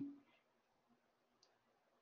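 Near silence with a soft click right at the start and a faint tick about a second and a half in.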